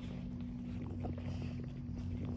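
A steady low-pitched hum runs unchanged throughout, with faint small rustles and clicks over it.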